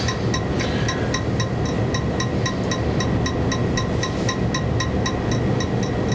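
Steady low hum and hiss of room and recording noise, with faint, regular ticks about five times a second.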